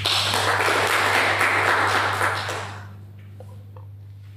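Small audience applauding, dying away about three seconds in, over a steady low electrical hum.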